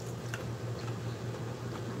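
A few faint, brief crunches of people biting into and chewing crispy cornstarch-coated fried chicken, over a steady low hum.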